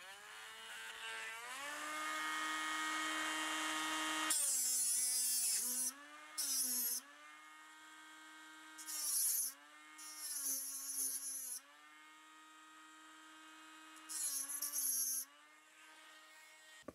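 Dremel rotary tool with a cutting disc spinning up to speed with a rising whine, then cutting a gap through a model railroad rail. Its pitch sags each time the disc bites into the metal, with a harsh grinding hiss in about five bursts, and the tool winds down near the end.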